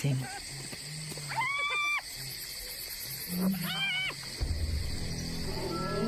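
Hyena at its den giving two drawn-out, high-pitched whining calls about two seconds apart, each rising at the start and then held for about half a second.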